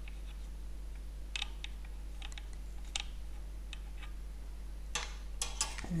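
Scattered light metallic clicks and taps as the small brass safety valve cover is unscrewed from a model traction engine's boiler, over a steady low hum.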